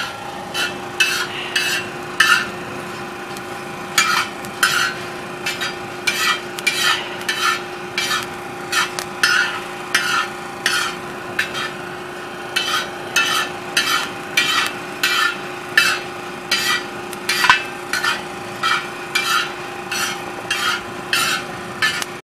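Metal spoon stirring and scraping roasting coffee beans across the steel pan of a disco, with short scraping strokes about one and a half a second and the beans rattling over the metal. A steady low hum runs underneath.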